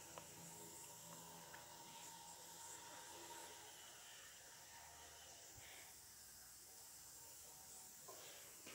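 Faint, steady sizzle of chopped onion and chicken breast sautéing in oil in a frying pan, with a few light clicks of a wooden spoon as it is stirred.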